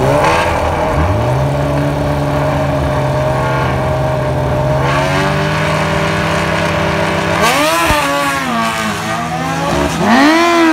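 Two drag-racing motorcycles, a nitrous Kawasaki ZX-14 and a second sportbike, running at the starting line. About a second in, one engine revs up and is held at a steady high rpm; from about seven and a half seconds the other engine's revs rise and fall repeatedly.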